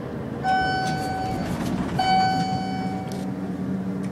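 Elevator car chime sounding twice, two matching dings about a second and a half apart, each ringing out for about a second. A low steady hum of the traction elevator comes in after the second ding.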